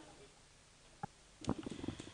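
Quiet room tone with one brief short tone about a second in, then low, irregular rumbling thumps and rustle from a desk gooseneck microphone being handled and switched on, growing louder.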